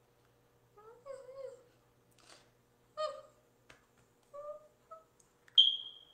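A few short, high-pitched vocal calls. The first, about a second in, wavers in pitch, and three shorter calls follow. Near the end comes a sharp high squeak, the loudest sound.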